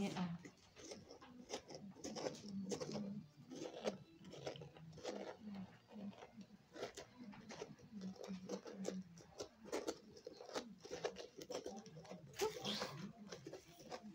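A knife cutting and scraping into a raw pumpkin: many short, irregular crunching strokes as the blade works through the flesh.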